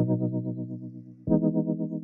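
Background music: effect-laden electric guitar chords, one struck at the start and another a little past halfway, each ringing and fading away.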